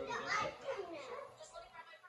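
A child's voice making sounds with no clear words, loudest in the first second.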